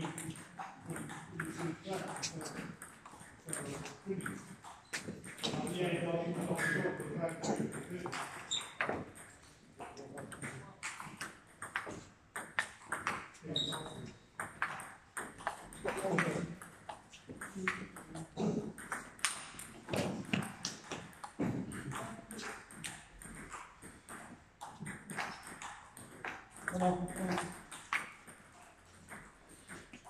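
A table tennis ball clicking off the table and the players' bats in rallies, a string of short, sharp clicks.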